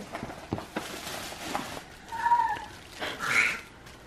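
Paper gift bag and tissue rustling and crinkling as a child pulls it open, in several bursts with small taps. A short, high, slightly bending call or voice sound cuts in about two seconds in.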